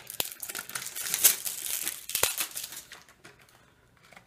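Paper and cardboard packaging of a small box of food coloring crinkling and tearing as it is opened by hand: a dense run of crackles with a sharp snap, dying away in the last second or so.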